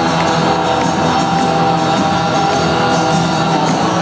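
Live rock band playing loudly, heard from within the audience.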